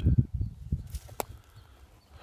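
Footsteps and camera handling on dry, needle-covered forest ground: a few soft low thumps, then two sharp clicks about half a second apart around the middle.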